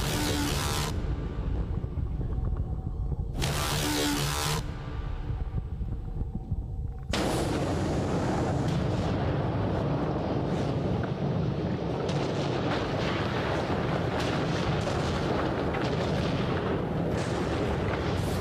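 Instrumental intro of a pop song played live over a concert PA, heavy in the bass, with two short loud bursts in the first five seconds; from about seven seconds in the full band sound comes in densely.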